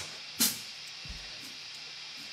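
Steady hiss from the band's PA between songs, with one sharp tick from the drum kit about half a second in and a soft low thump about a second in.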